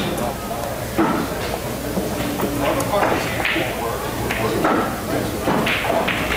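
A pool cue striking the cue ball sharply about a second in, a firm shot played with extra pace, with the balls knocking together afterwards, over background voices in the room.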